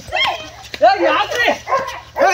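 Several people shouting loudly in a fight, with a dog barking among them.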